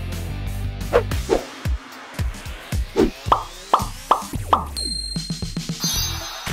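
Upbeat jingle music with a run of short cartoon 'plop' sound effects, about seven in all, four of them in quick succession about three seconds in, then a high bright chime ringing near the end.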